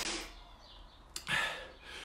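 A man breathing out hard twice, about a second apart, catching his breath after a bout of exercise.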